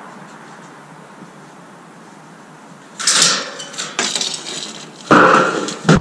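Thin light-gauge metal framing stock clattering and scraping as it is handled: a quiet start, then a sharp rattle with clicks about three seconds in and a longer scrape near the end.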